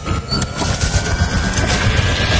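Sci-fi power-up sound effect from an animated logo intro: a dense low rumble with a thin whine rising slowly in pitch as it builds.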